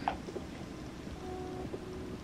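Quiet handling of a red leather-covered Cartier jewellery box, with one light click right at the start and a few small ticks just after; otherwise only faint room tone.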